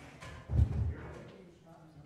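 A dull, low double thud about half a second in, the loudest sound here, with faint murmured voices around it.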